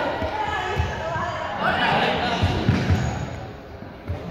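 Running footsteps thumping irregularly on a sports-hall floor, with raised voices calling out, echoing in the large hall.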